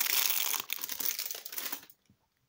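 Thin clear plastic bag crinkling as a small diecast toy car is pulled out of it. The crinkling stops suddenly near the end.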